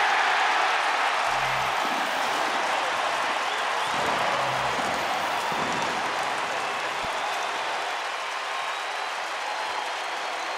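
Home stadium crowd cheering and applauding a touchdown, a dense roar that is loudest at first and slowly eases off.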